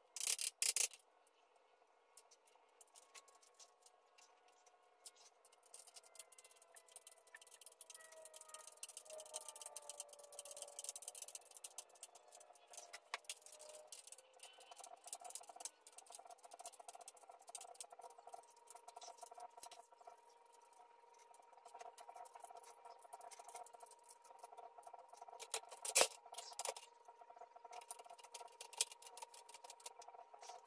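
Small metal clicks, taps and rattles of steel bolts and hand tools being handled while a floor jack is bolted back together, with a louder clatter of tools in the first second and a single sharp metal knock near the end.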